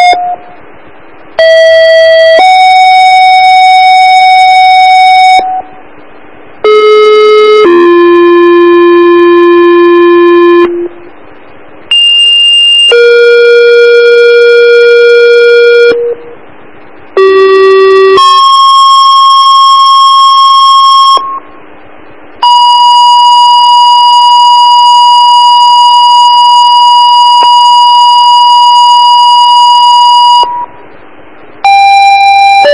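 Radio dispatch paging tones over a scanner: four two-tone sequential pages, each a short tone stepping straight into a longer steady tone of a different pitch, with radio hiss in the short gaps between them. Near the end comes one long steady tone of about eight seconds. These are tone-outs that set off the fire and ambulance crews' pagers before a dispatch.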